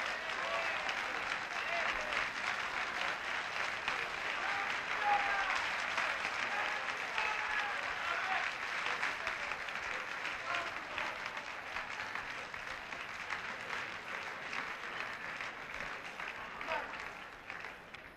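A large audience applauding, with many scattered voices mixed into the clapping; the applause thins out and gets quieter toward the end.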